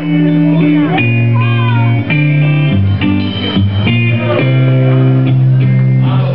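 Live band playing a blues on electric guitars over a bass line, the bass notes changing every second or two.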